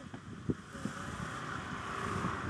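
Wind on the microphone and a steady rushing background, with a few soft clicks and mouth sounds of someone biting and chewing boiled corn on the cob, the strongest about half a second in.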